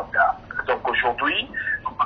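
Only speech: a man talking in French over a telephone line.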